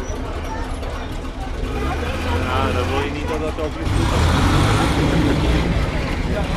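Engines of WWII military vehicles, a tracked armoured vehicle and a jeep-type vehicle, rumbling low as they drive slowly past. The sound gets louder about four seconds in as a vehicle comes close.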